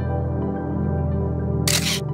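Soft ambient background music with sustained tones; near the end a single camera shutter click, the loudest sound.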